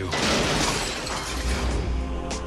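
A sudden crash of shattering glass that dies away over about a second, laid over sustained trailer music, with a low drone coming in about a second in.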